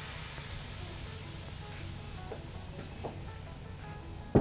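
Garbanzo bean flour pancake batter sizzling on a hot griddle just after being poured, a steady hiss, with faint background music.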